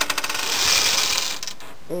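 A long chain of dominoes toppling in quick succession: a fast rattle of clicks that thickens into a dense clatter and dies away about a second and a half in.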